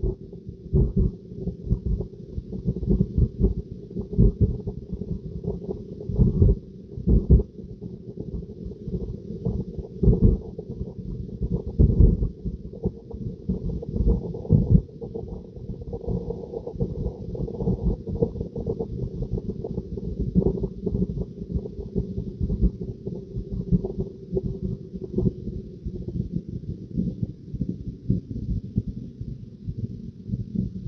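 Low rumble of road and tyre noise inside a Tesla Model 3's cabin on the move, broken by frequent irregular low thumps, with a faint steady hiss behind it.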